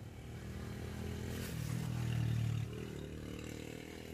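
A small motorcycle engine passing close by, getting louder to a peak a little past halfway, then falling away.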